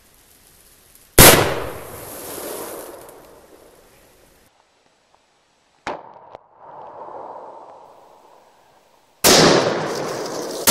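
.50 Beowulf AR pistol firing: one very loud shot about a second in, its echo fading over about three seconds. Around six seconds a sharp crack is followed by a slower, duller drawn-out rumble, a slowed-down replay of the shot. Another loud shot comes near the end.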